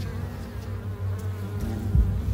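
Steady low buzzing of a bee swarm, used as a trailer sound effect.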